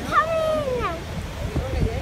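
A young child's high-pitched voice, one long drawn-out vocal sound that slides down in pitch just before the second mark, over the steady low rumble of the moving tour boat and wind.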